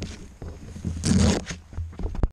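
FPV racing quadcopter heard from its onboard camera: brushless motors spinning 6-inch tri-blade props, with a loud rasping surge of throttle and prop wash about a second in over a steady low hum.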